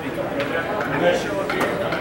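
Indistinct voices of people talking, with a few short knocks or clicks among them.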